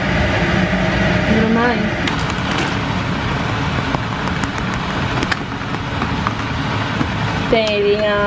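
Pot of water at a rolling boil with tortelloni cooking in it: steady bubbling, with scattered small clicks and pops from about two seconds in.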